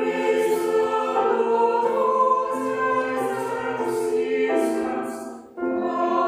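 A small choir singing a sacred piece with piano accompaniment, holding long notes, with a brief break for breath near the end before the next phrase.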